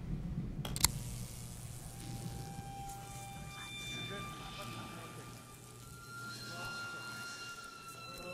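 A single sharp crack about a second in, then eerie sustained tones at several pitches that come and go over a low steady hum: a sound effect for the ghost machine being switched on.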